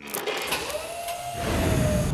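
Sound effect of a large searchlight being switched on: a clunk and hiss, then a whine that rises in pitch and holds. Low dramatic music rumbles in about a second and a half in.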